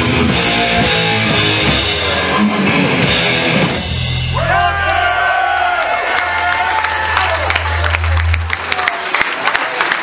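Live thrash metal band with distorted electric guitars and drums playing, ending about three and a half seconds in. A low bass note and guitar then ring out and hold for about five seconds before dying away.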